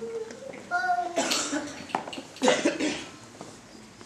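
Two coughs about a second apart, with a child's short voice just before the first.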